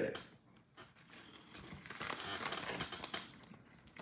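A person chewing a dried edible insect: crisp, crackly crunching with many small cracks, starting about a second and a half in and running for about two seconds.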